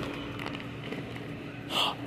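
Store room tone: a steady low hum under a faint background wash, with a brief burst of noise near the end.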